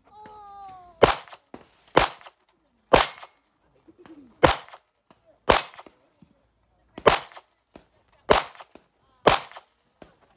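Rifle shots from an M1 Garand converted to .308 ("Mini G"): eight shots fired at a steady pace about one a second, with a short pause in the middle, each followed by a brief ring or echo.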